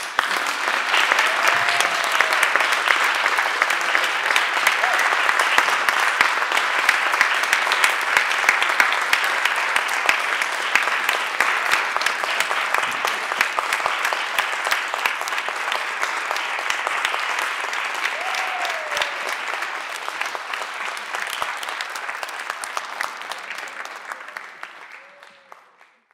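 Audience applauding, a steady dense clapping that starts at once, holds, and fades out over the last few seconds.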